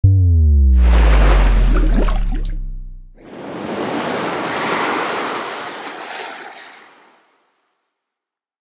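Intro logo sting sound design: a deep booming tone sliding downward in pitch under a rising rush of noise for about three seconds, then a second rush like a water splash that swells and fades away before the end.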